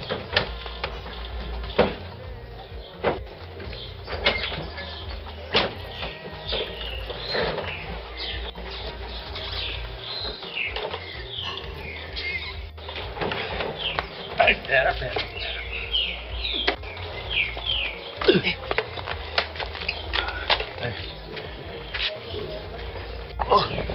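Scattered knocks and clunks as a Honda Pop 100 motorcycle is lifted off a pickup truck's bed and set down on the ground, over background music.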